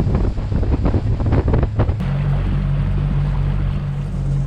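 Small inflatable boat under way on choppy open water: wind gusting hard on the microphone over rushing, splashing water, then after a sudden change about halfway, a steady low outboard-motor hum.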